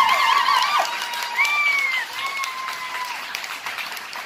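Audience applauding and cheering, with a few high whistles among the clapping; the applause thins out toward the end.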